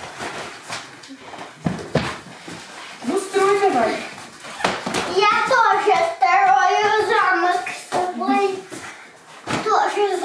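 Young child's voice making wordless high-pitched sounds, with a couple of short knocks from large foam play blocks being moved and dropped.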